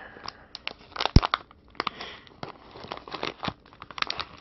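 A clear plastic kit bag being handled and pulled open at its top, crinkling with irregular crackles. There is a sharp click about a second in.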